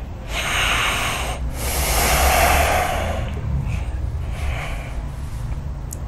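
A man lying down taking two long, deep breaths, the second the longer, followed by fainter breathing, as he comes out of a hypnotic trance.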